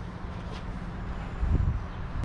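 Steady low rumble with a low thump about one and a half seconds in.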